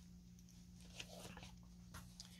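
Near silence: room tone with a faint steady low hum and one small click about halfway through.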